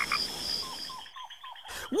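Jungle ambience of frogs and insects: a steady high pulsing insect trill that stops about halfway through, with a few short falling frog calls.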